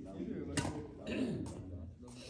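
Men's voices talking and calling across the court, with a sharp tap a little over half a second in.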